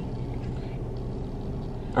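Steady low hum inside a car's cabin.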